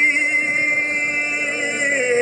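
A male ranchera singer holds one long sung note with vibrato, backed by a mariachi band.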